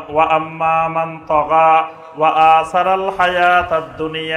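A man's voice chanting through a microphone: a preacher intoning in long held, sung notes, four or five phrases with short breaks between them.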